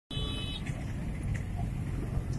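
Road traffic noise, a steady low rumble, with a brief high-pitched tone in the first half second.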